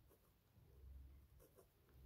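Faint scratching of a ballpoint pen writing on paper.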